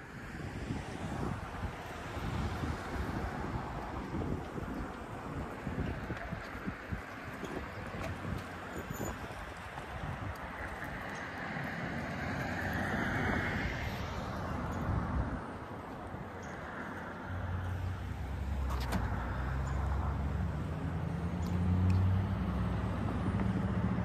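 Road traffic noise with wind on the microphone; a low vehicle rumble grows louder over the last third.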